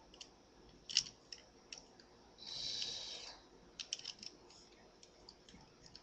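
Light plastic clicks and taps from Transformers Power Core Combiners toy parts being handled and fitted together: one click about a second in and a quick cluster just past the middle, with a soft hiss lasting about a second between them.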